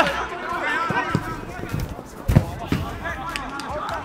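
Football kicked in a shot on an outdoor pitch: a sharp thud a little over two seconds in, with a second knock just after, over indistinct shouting from players.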